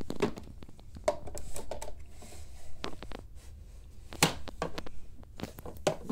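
Small toys being handled in a wooden dollhouse: scattered light clicks and knocks, the sharpest about four seconds in.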